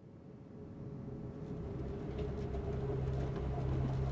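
Approaching train: a low rumble with a steady hum that grows gradually louder.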